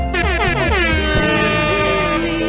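Loud music with a horn-like blast in it: a many-toned horn sound slides down in pitch over the first second, then holds a steady note.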